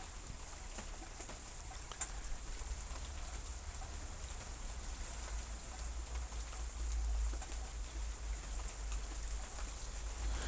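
Light rain pattering, with scattered faint drop ticks over a steady low rumble that swells somewhat in the second half.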